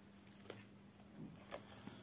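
Near silence: a faint steady hum with a few faint light clicks as the stamped cross-stitch canvas and needle are handled.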